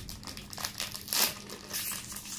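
A food wrapper crinkling as it is handled, in several short irregular bursts, the loudest a little past one second in.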